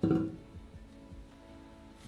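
Background music with held, steady notes, and a brief dull knock right at the start.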